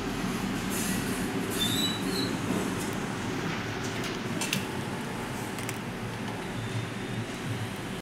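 Rewound Almonard fan-motor stator energised on the mains, running with a steady rumbling hum. A few sharp crackles of sparking come from the winding about halfway through.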